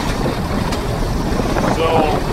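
Allis-Chalmers 170 tractor engine running steadily under PTO load, driving a Weed Badger's pump as its rotary head works through tall weeds.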